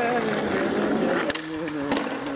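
Skateboard wheels rolling on concrete, with sharp board clacks about a second and a half in and near the end. A wordless voice holds sung notes over it.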